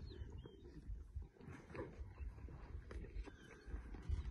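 Lions feeding on a warthog kill, heard faintly as scattered clicks and low growling over a low rumble, with a short bird chirp about half a second in.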